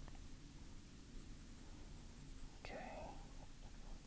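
Quiet room tone, with a brief faint murmur of a voice about three seconds in.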